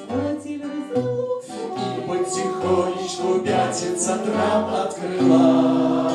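A roomful of people singing a song together, with acoustic guitar accompaniment.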